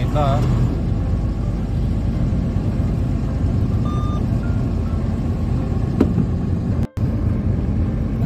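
Truck engine and road noise heard from inside the cab while driving, a steady low rumble. A few brief, faint tones sound around four seconds in. A sharp click comes about six seconds in, and the sound cuts out for an instant just before seven seconds.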